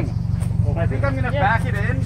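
Gasoline engine of a half-cut car running with a steady low hum, while a voice talks over it from about half a second in.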